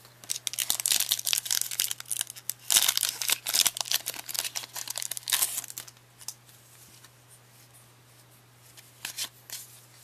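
A Pokémon trading-card booster pack's foil wrapper being torn open and crinkled: a run of crackling tears and rustles lasting about five and a half seconds, then quiet apart from a few soft clicks of the cards being handled near the end.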